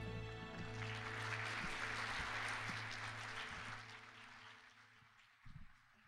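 The last held chord of the solo's accompaniment fades out, and a congregation applauds, the clapping dying away over about four seconds. There is a low thump near the end.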